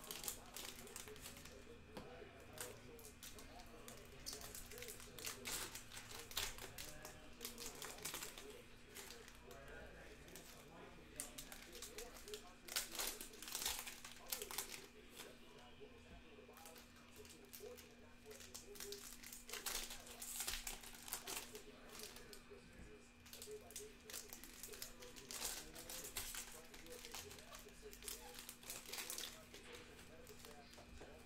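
Foil trading-card pack wrappers crinkling and tearing as they are opened and handled, in repeated short crackles, over a steady low hum.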